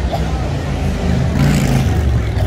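City street noise: a low, steady rumble with voices murmuring underneath, swelling louder in the second half.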